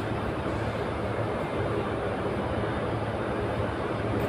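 Steady low background hum and hiss, unchanging throughout, with no distinct events.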